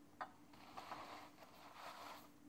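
Near silence: a faint rustle of a wax crayon and hands moving over drawing paper, with a small tick about a quarter second in, over a faint steady hum.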